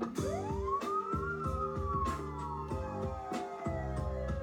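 Live electronic rock band playing an instrumental passage: drum hits and held keyboard notes, with a siren-like gliding tone that sweeps up quickly in the first second and then slowly falls over the next three seconds.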